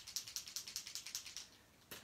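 Rapid light clicking, about ten clicks a second, dying away after about a second and a half: small hard craft supplies rattling as they are picked up and handled.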